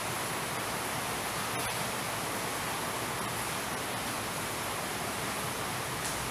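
Steady, even hiss of background noise with no speech.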